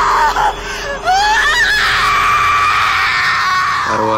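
A woman screaming in pain. Broken, wavering cries in the first second give way to a rising shriek about a second in, then one long high scream held to the end.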